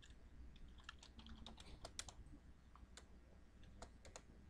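Faint typing on a computer keyboard: irregular single key clicks.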